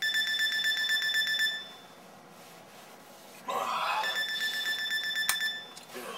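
Electronic alarm clock beeping in fast, high-pitched pulses for about a second and a half. It stops, then sounds again about four seconds in. A brief rustle comes just before it restarts, and a sharp click comes near the end.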